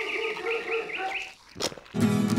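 A dog howling: one long, steady, wavering note that dies away about a second and a half in.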